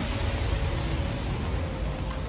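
Steady rushing noise with a strong low rumble and a faint steady hum, with no distinct events.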